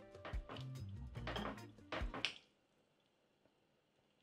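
Quiet background music with a few soft knocks of a spatula stirring thick bean stew in a pot. It all cuts to silence a little past halfway.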